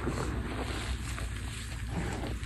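Fingers digging and pressing into a bowl of loose, crumbled gym chalk powder, a steady soft crunching and rustling with a low rumble underneath.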